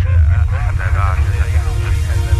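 Opening of an electronic track: a voice with speech-like phrasing over a steady, deep bass rumble.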